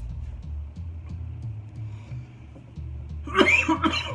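Background hip-hop music with a steady bass beat, then a man coughs loudly near the end, a cough he puts down to allergies.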